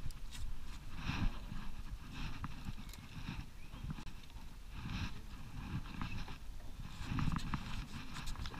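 Hollow knocks and rustles of hands and fly line working in a small plastic dinghy, coming in irregular bursts about every second or two, as line is stripped in on a hooked pike.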